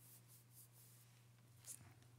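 Near silence: room tone with a low steady hum and faint paper rustles, the clearest a short one near the end as a page of the pulpit Bible is handled.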